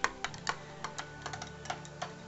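A metal teaspoon stirring soup in a drinking glass, clinking lightly and irregularly against the glass several times a second.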